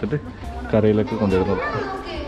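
Voices of people talking, children's voices among them.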